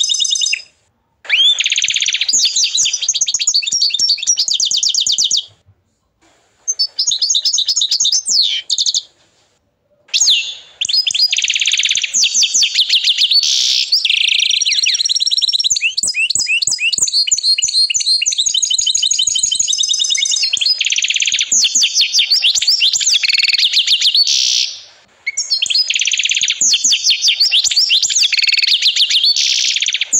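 Domestic canary singing: long, high-pitched phrases of fast rolling trills, broken by a few short pauses.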